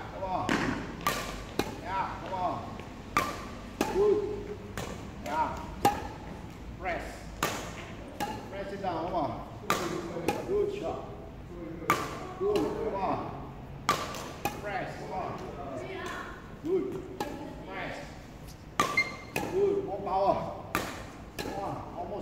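Badminton drill on a hard hall floor: sharp cracks and thuds from racket swings and foot strikes, irregular at about one or two a second, with short vocal sounds between them.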